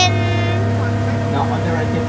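Engine of an amphibious duck-tour vehicle running steadily while it cruises on the water: an even low hum. A voice trails off right at the start, and faint voices come and go behind the hum.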